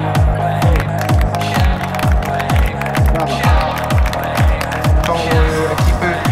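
Background electronic dance music with a steady kick drum, about two beats a second, over sustained bass notes.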